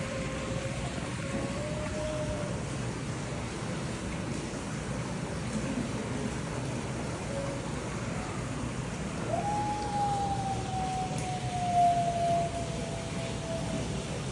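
Arctic wolves howling to each other. One low, slightly rising howl ends about two and a half seconds in. A longer, higher howl starts around nine seconds in and slowly falls in pitch, loudest near the end.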